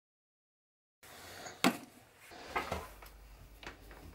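After a second of dead silence, a few faint handling sounds on a workbench: three short knocks or clicks about a second apart, the first the loudest.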